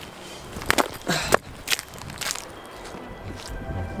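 Footsteps crunching through dry fallen leaves: a handful of uneven steps in the first couple of seconds.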